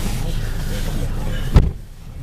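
A car door slammed shut, heard from inside the cabin: one loud thud about one and a half seconds in. After it the outside noise drops away and only a low rumble remains.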